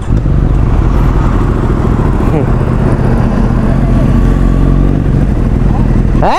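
Kawasaki Z900 inline-four engine running steadily under way, heard from the bike itself, with wind rushing over the microphone.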